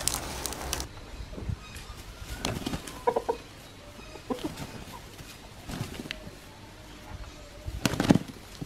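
Chickens clucking in short scattered calls, with a sudden loud burst near the end as two birds scuffle with flapping wings.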